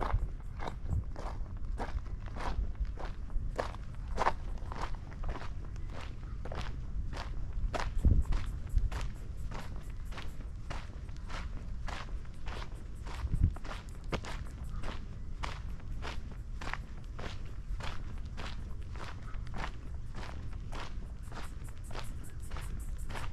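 Footsteps crunching on a sandy gravel path at a steady walking pace, about two steps a second. Two louder low thumps come about eight and thirteen seconds in.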